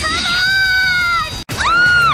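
A woman's high-pitched cartoon voice letting out a long held squeal. It cuts off suddenly about a second and a half in, and a second squeal follows that rises sharply and stays high.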